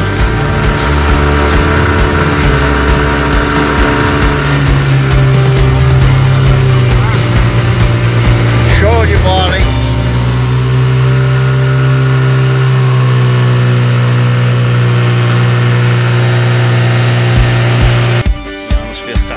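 Outboard motor of a small aluminium fishing boat running at speed, a steady drone whose pitch shifts slightly a couple of times.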